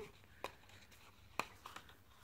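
Die-cut cardstock label being pressed out of its sheet: faint paper clicks, two sharper ones about half a second in and again about a second later.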